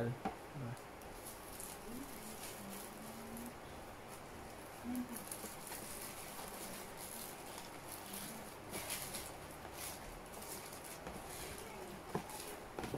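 Quiet rustling and crinkling of paper wrapping and a cardboard takeout box being handled, with short, scattered crackles.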